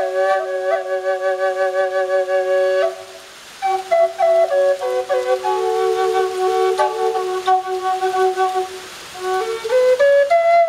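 Catalpa-wood double drone flute in G minor, tuned to 432 Hz, playing a flowing melody over a steady held drone note. The sound breaks off briefly for a breath about three seconds in and again near the end.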